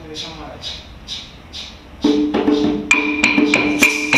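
Traditional Dominican drums and percussion start playing about halfway through, with a steady rhythm of sharp drum and stick strikes and a sustained tone held over them. Before that comes a soft, evenly spaced shaking.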